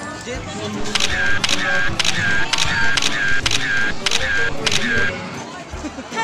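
A quick series of about nine sharp clicks, each followed by a short high beep, about two a second, stopping about five seconds in, heard over music and crowd voices.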